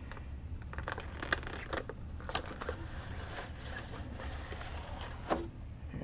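Clear plastic packaging tray being handled, giving scattered light clicks and crinkles as the plastic flexes and shifts.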